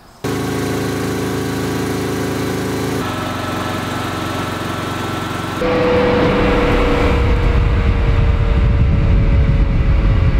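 Westinghouse J34 turbojet on a ground run: first a steady whine of several tones that changes abruptly a few seconds in, then, just past halfway, a sudden step up to a louder rushing roar with a single whine slowly falling in pitch.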